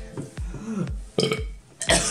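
A man belching, a few short burps in a row, after wolfing down a whole trifle; the food nearly comes back up with them.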